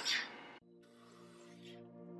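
SodaStream soda maker giving a short hiss as CO2 is injected into the water bottle, cutting off about half a second in. Then soft background music with held notes comes in and slowly swells.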